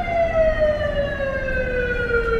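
An emergency vehicle's siren wailing, its pitch sliding slowly and steadily downward, over the low rumble of city street traffic.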